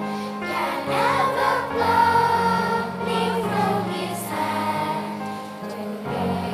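Children's choir singing in unison over instrumental accompaniment, with long sustained bass notes under the voices.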